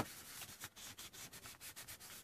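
Faint scrubbing of a small paint applicator pad over collaged paper in short, quick strokes, several a second, working acrylic paint so the colours blend into each other.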